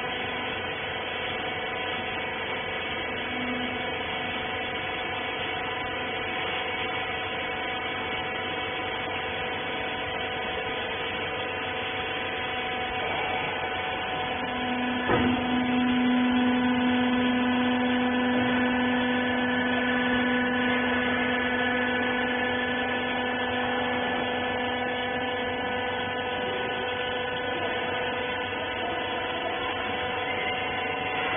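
Rag baler's machinery running with a steady electric hum. About halfway through there is a knock, then a low steady tone joins and the sound grows louder for about ten seconds before easing off.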